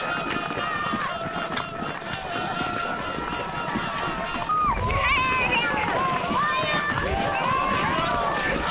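Riders' voices calling and shouting over reindeer running through snow; the calls grow louder and livelier about halfway through.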